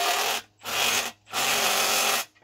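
Impact gun running bolts into the adapter plate between an electric motor and a gearbox, pulled in three short bursts with brief pauses between them as a bolt is driven home.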